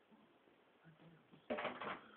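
Bed sheet rustling in one loud, crackly burst of about half a second near the end as the cat scrambles in the fabric; before that, only faint room sound.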